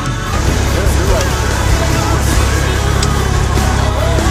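Music cuts off about a third of a second in, giving way to the steady drone of a single-engine Cessna's engine and propeller heard inside the cabin, with a faint voice over it.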